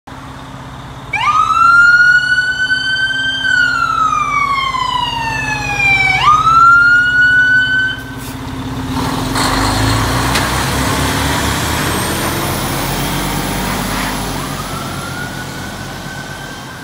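Fire engine siren wailing: it sweeps up, glides slowly down, sweeps up again and cuts off about eight seconds in. The truck's engine then rumbles as it pulls away, and a siren starts up again, fainter, near the end.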